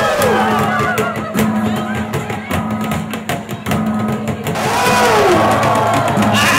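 Traditional gong-and-drum music: a fast run of percussion strikes through the middle over a steady low ringing tone, with voices calling out near the start and again near the end.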